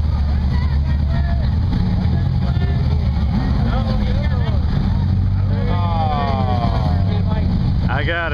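Competition rock buggy engine running with a steady low drone, with spectators' voices and shouts over it.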